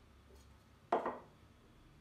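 A quiet stretch broken by one short clatter about a second in: an aluminium ring cake pan being lifted off a turned-out cake and set down into a metal bowl.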